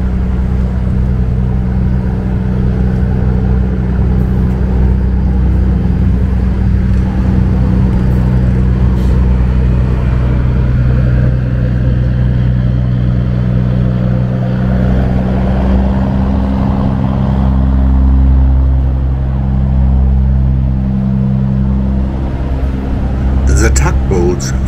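Steady, deep engine drone with traffic noise, growing somewhat louder and deeper about two-thirds of the way through.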